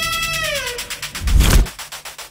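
A long, steady, high note slides down in pitch and fades, then a deep boom hit lands about a second and a half in as the picture cuts to the title card.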